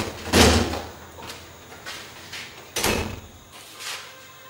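An interior door handled roughly: two loud bangs about two and a half seconds apart, as it is flung open and then slammed shut.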